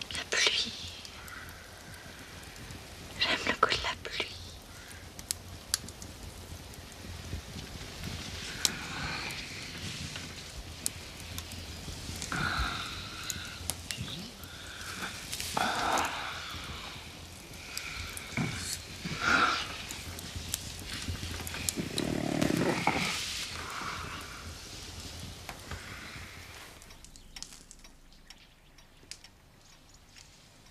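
A couple's breathing, sighs and whispers close to the microphone, with a few soft clicks, fading quieter near the end.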